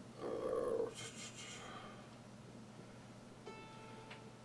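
Epiphone acoustic guitar, quiet: a short sound from the strings in the first second, then a single plucked string ringing clearly from about three and a half seconds in, with the left hand at the tuning pegs as if tuning.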